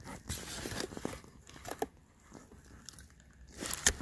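Handling noise from unboxing a car head unit: packaging crinkling and rustling, with a few small clicks as the unit is turned over. Busiest in the first second, then fainter with only the odd click.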